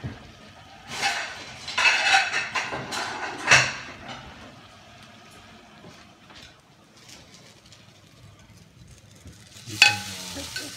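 Kitchen dishes and cookware clattering: a run of clinks and knocks in the first few seconds, then a quieter stretch, and one sharp clank just before the end.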